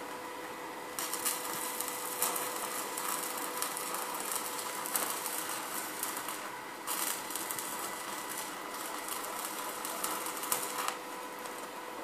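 Electric arc welding on steel rebar: the arc crackles and sizzles from about a second in, stops briefly just before the middle, then runs again until about a second before the end.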